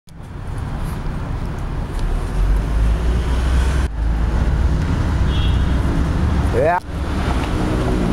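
Street traffic: a steady low rumble of road vehicles, heavier from about two seconds in, with a brief voice near the end.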